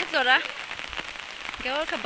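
Rain falling steadily on an umbrella held overhead, an even hiss sprinkled with many small drop taps.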